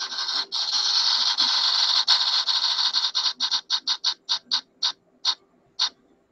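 On-screen spinning prize wheel ticking. It starts as a fast run of clicks that blur together, then slows into separate ticks spaced further and further apart as the wheel comes to rest on a category.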